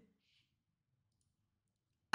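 Near silence: the sound drops away almost completely between spoken phrases.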